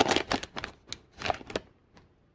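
Foil trading-card pack wrapper crinkling as it is pulled open, then a few short rustles and clicks of the cards being slid out of the pack.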